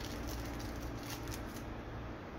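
A thin clear plastic sticker crinkling and rustling as it is peeled and rolled between fingers, with soft irregular crackles that die away near the end.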